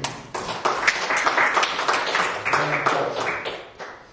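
Audience applause, many hands clapping, starting just after a spoken "thank you", holding steady for about three seconds and fading out near the end.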